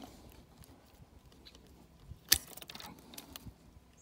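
Hand pruners snipping through a peach branch: one sharp click a little over two seconds in, followed by a few lighter clicks and rustles of twigs.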